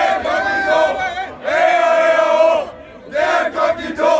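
A crowd of young men cheering and chanting together: two long drawn-out shouted calls, then shorter shouts after a brief lull near the end.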